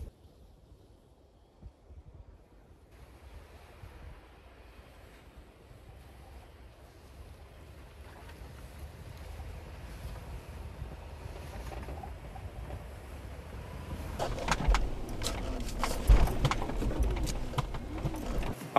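Lexus GX470's V8 engine driving through deep snow, faint at first and growing steadily louder as it approaches. A string of thumps and crunches comes near the end as it punches up onto the road.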